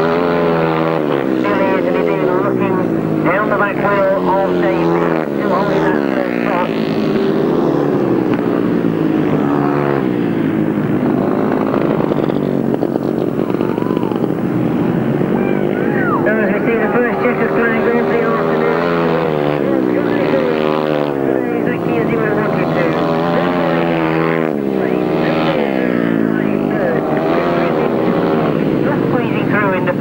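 Several grasstrack solo racing motorcycles at full race, their engines rising and falling in pitch over and over as the riders shut off into the bends and power out of them.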